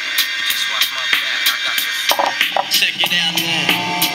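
Music with a ticking beat played through a small BB3.al full-range speaker driver held bare, outside any enclosure: thin, with almost no bass. About three seconds in, as the driver is set into its small box, bass notes come through.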